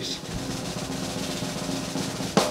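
A rapid, steady snare-drum roll, a suspense sound effect leading into the announcement of a winner.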